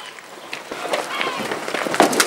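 Several people rushing and scuffling around a car, with quick footsteps on asphalt and raised voices; it grows busier about half a second in.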